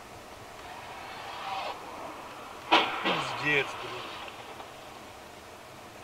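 Two cars colliding at an intersection: one sharp crunch of impact a little under three seconds in, followed at once by a short startled exclamation from inside the recording car.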